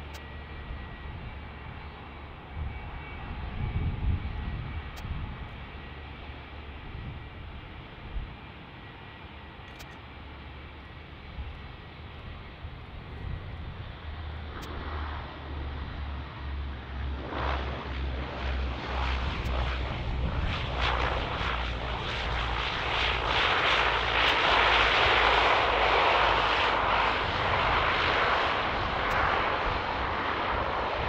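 Boeing 757 jet engines running as the airliner taxis: a steady low rumble that swells, from a little past halfway, into a loud rushing jet noise, loudest near the end.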